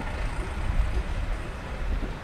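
Outdoor street ambience: a low, uneven rumble with a faint hiss and no distinct events.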